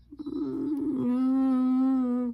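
A man humming, with closed lips: an uneven, wavering start, then one long steady held note.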